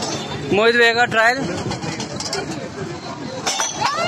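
Steel tumblers clinking and clattering as a thrown ball knocks a stack of them off a wooden table, a quick cluster of metallic impacts near the end.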